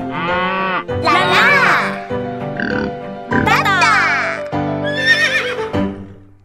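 Children's song music with cartoon farm-animal calls over it: a cow mooing near the start, then a horse whinny that falls in pitch about halfway through.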